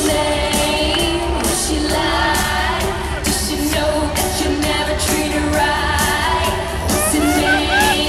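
A live pop-rock band playing through an arena PA, keyboard, drums and guitars, with a woman singing over it, heard from among the audience.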